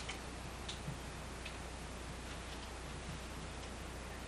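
Quiet room tone with a steady low hum and hiss, and a few faint, light ticks about every half-second to second.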